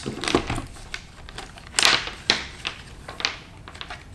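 Plastic clamp meters and their rubbery test leads being handled and set down on a wooden workbench: a scatter of light clicks and knocks, with a louder rustle about two seconds in.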